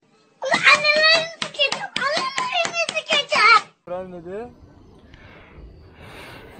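A young child talking loudly in a high-pitched voice for about three seconds, in the thin, low-fidelity sound of a re-shared phone video. Then a short, lower-pitched voice, its pitch dipping and rising again.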